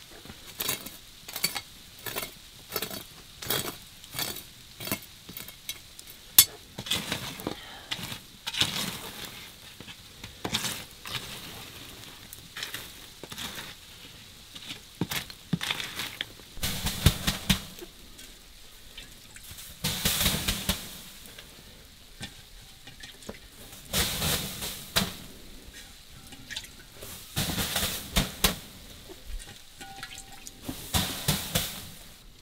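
Ash and glowing embers being scraped and raked over a clay hearth floor. It starts as a quick run of short, even strokes, about two a second, then turns into slower, louder scrapes as a flat wooden paddle shoves the coals about.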